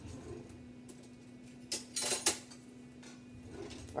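A metal spoon clinking and scraping against a plastic container as a corn and black bean mix is spooned out, with a short run of clinks near the middle. A steady low hum runs underneath.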